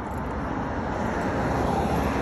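Road traffic noise from a passing vehicle, its steady noise growing louder toward the end.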